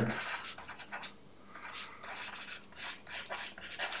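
Stylus scratching on a drawing tablet in short, irregular strokes as words are handwritten, with a brief lull a little after a second in.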